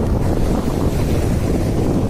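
Landslide on a hillside: rock and earth coming down onto the road in a loud, steady, low rumble.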